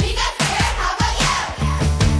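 Upbeat background music with a pounding drum beat. About one and a half seconds in, it switches to a fuller, heavier section.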